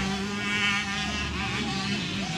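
Motocross motorcycle engine running at high revs as the bike races down the dirt track.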